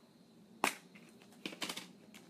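Fold-open balloon shapes being handled and opened out: a sharp click about two-thirds of a second in, then a quick run of light clicks near the end.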